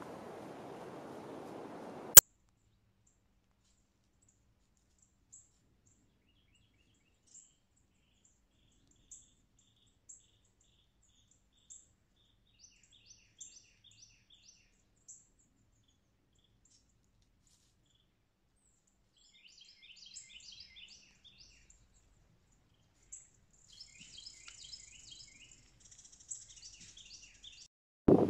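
Small birds chirping: short, high chirps, scattered at first and coming in busier bursts over the last several seconds. Near the start, a faint background hiss ends in a single sharp click, and everything else drops to silence.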